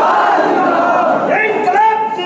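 A large crowd of many voices shouting at once, loud and dense, typical of supporters raising slogans at an election rally.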